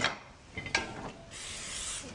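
A metal frying pan clinks down on a gas-stove grate, then a short steady hiss of cooking spray from an aerosol can is let into the empty crepe pan near the end.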